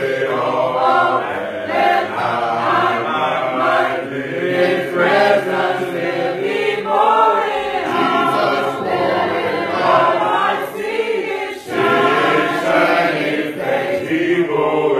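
A congregation singing a hymn together without instruments, many voices carrying sustained notes.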